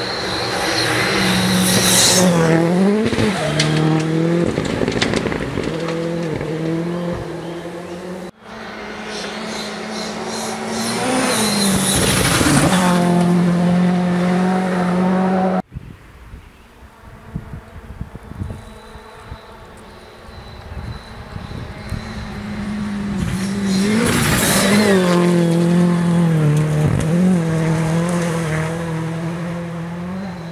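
Rally car engine at high revs on a dirt stage, passing close three times: each pass swells to a peak and falls in pitch as the car goes by, with quick rises and drops of the revs between gear changes. Between the second and third passes the engine is heard more faintly, further off.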